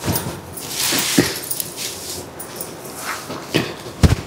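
Kalamkari-printed saree fabric rustling and swishing as it is lifted and flipped over, loudest about a second in, with a couple of soft knocks.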